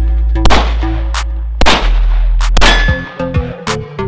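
Pistol shots fired at steel targets: three loud shots about a second apart, the third followed by a steel plate ringing, then a few lighter hits near the end. Background music with a steady beat plays underneath.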